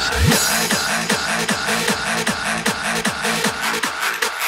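Hardstyle electronic dance music: a deep kick drum with a falling pitch opens, then a run of quick, evenly spaced falling bass notes plays under a repeating synth figure.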